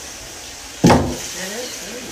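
Wooden monjolo, a water-driven pestle beam, dropping its pestle into the hollowed log mortar with a single sharp wooden knock about a second in. This is its pounding stroke, the blow that husks grain once the water box at the other end has emptied.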